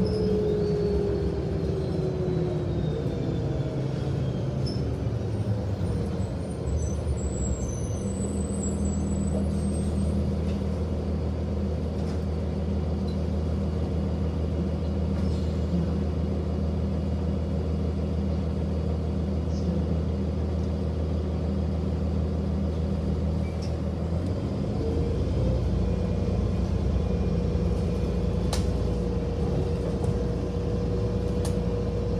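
City transit bus heard from inside: its drivetrain whine falls as the bus slows to a stop, the engine idles steadily at the stop, then the whine rises again as the bus pulls away near the end.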